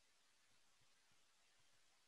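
Near silence: a pause between speakers with only faint recording noise.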